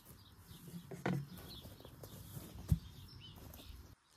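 Quiet outdoor ambience with a few faint bird chirps. The plastic cover of a valve standpipe is handled and lifted off, giving a soft knock about a second in and one short, dull thump later on.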